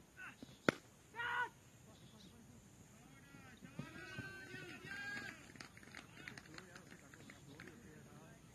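A cricket bat strikes the ball with one sharp crack less than a second in, followed half a second later by a short, high shout. Faint voices of players carry across the open ground after that.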